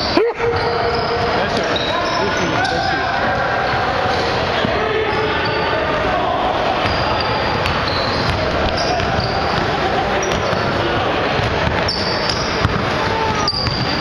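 Basketball game sounds echoing in a gym: a ball bouncing on the hardwood floor, short high sneaker squeaks and players' voices calling out.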